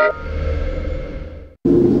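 A low rumble with a hiss over it, fading away and dying out about one and a half seconds in.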